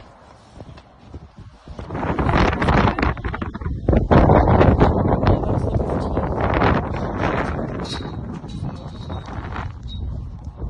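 Wind buffeting a phone's microphone outdoors, loud and gusty from about two seconds in, mixed with rustle and handling noise as the phone is moved.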